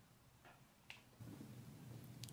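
Near silence: room tone with two faint clicks, then a faint low hum that comes in just past the middle.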